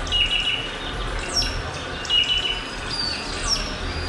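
A bird singing: a short high whistled phrase repeating about every two seconds, with quick downward-sliding calls between the phrases, over a low rumble.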